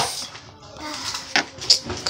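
Plastic cap of a slime container being worked at by hand: a sharp click at the start and another click about 1.4 s in, with light handling noise between.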